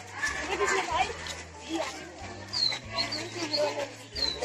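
Schoolchildren's voices chattering and calling out together, with a few short high squeaks in the second half.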